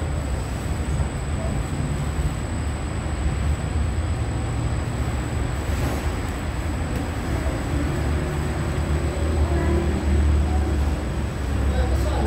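Steady low rumble of bakery machinery, with a thin, steady high whine above it.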